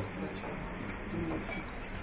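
A short pause in a man's speech into a handheld microphone: faint room tone with a soft, brief vocal hum.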